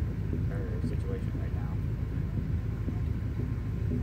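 Low, steady rumble of a Chevy P30-chassis motorhome's engine idling while parked, heard from inside the cab.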